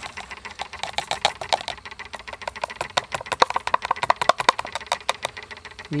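Near-boiling sodium hydroxide solution in a glass beaker crackling and popping as sodium iodide is tipped in. It is a rapid, irregular run of small clicks.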